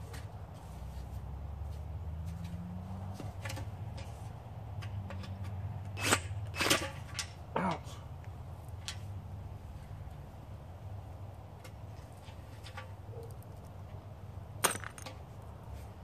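Sharp metallic clinks and knocks of extruded aluminum scrap being handled: three close together around the middle and one more near the end, over a steady low hum.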